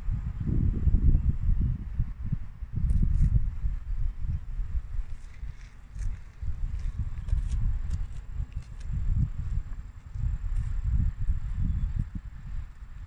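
Wind buffeting the microphone: a low, gusting rumble that swells and drops every second or two.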